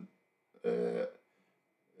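A man's drawn-out hesitation sound, "eh", held at one steady pitch for about half a second.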